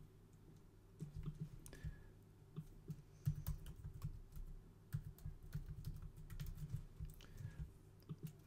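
Computer keyboard typing: irregular runs of keystrokes, fairly quiet, starting about a second in.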